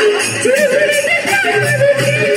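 Live Sambalpuri orchestra music played loud over a PA system: a melody that slides up and down in pitch over a recurring bass beat.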